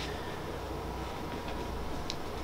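Steady room tone: an even background hiss with a low hum and a faint steady tone, with no distinct events.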